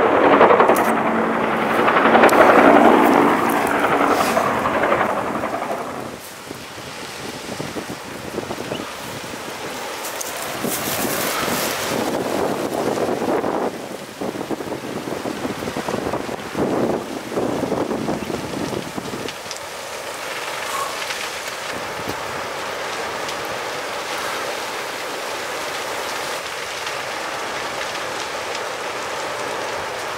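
A helicopter flying overhead for the first few seconds, fading out by about six seconds in. Then a bushfire burning through forest: a steady rush of flames with scattered crackles and pops, settling into an even roar with wind in the second half.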